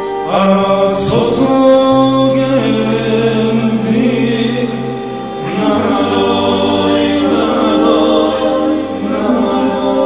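Live band music: sustained keyboard chords under a man singing, with a cymbal crash about a second in.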